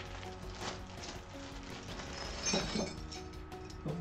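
Light metallic clinks of small steel hex bolts and Allen keys being handled and picked out of a plastic parts bag, over a steady bed of background music.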